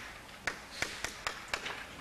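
Chalk tapping and clicking on a blackboard while writing: a series of about eight sharp, irregular taps.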